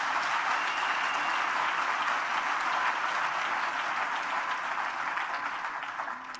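A large seated audience applauding, a dense steady clapping that eases slightly near the end.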